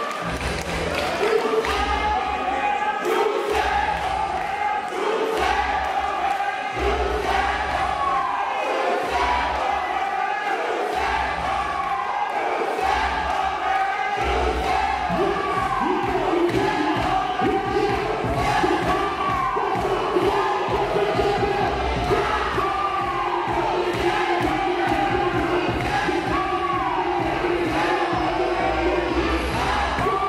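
A packed crowd cheering, shouting and chanting over a DJ's ballroom vogue beat. The beat has a heavy bass pulse that runs on continuously from about halfway, with a short sound recurring every few seconds.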